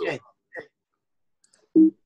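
A man's voice over a video call: a short "okay", then dead silence broken by a faint brief sound and a short loud vocal sound near the end.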